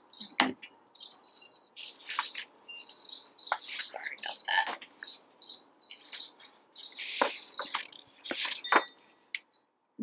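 Small birds chirping in short, high calls scattered throughout, mixed with the paper rustle of a hardcover picture book's pages being handled and turned, most clearly about two seconds in and again around seven seconds.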